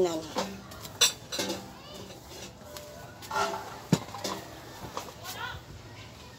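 A metal spoon clinking against a glass bowl as food in it is stirred and scooped, with sharp clinks about a second in and again about four seconds in.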